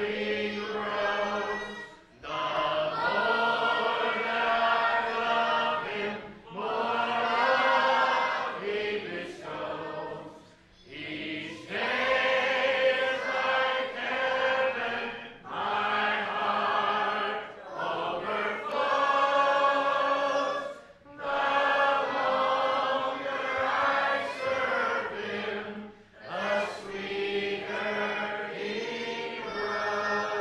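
Church congregation singing a hymn together, in sung phrases of a few seconds each with short pauses for breath between them.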